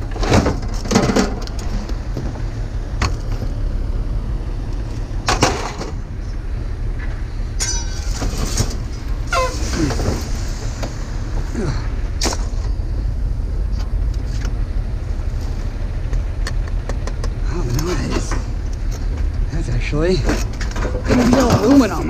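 Scrap metal and junk being unloaded from a trailer by hand: scattered clanks and knocks as pieces are pulled off and dropped onto the ground, over the steady low rumble of an engine running.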